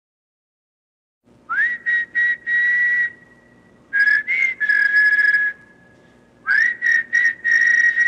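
After a second of silence, a person whistles a short tune in three phrases of breathy notes. The first and last phrases open with an upward slide.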